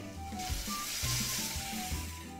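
Glazed chicken pieces sizzling on a hot tabletop grill, the sizzle swelling from about half a second in, over light background music.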